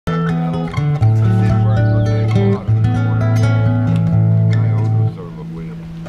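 Nylon-string guitar playing low sustained notes under plucked higher notes, then stopping and ringing out about five seconds in.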